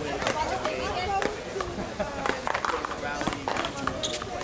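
People talking in the background over a paddleball game, with sharp knocks of the paddleball being struck with a solid paddle and hitting the wall during a serve and rally.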